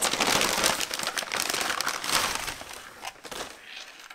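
Aluminium foil takeout bowl crinkling and crackling as it is handled and lifted, dying down near the end.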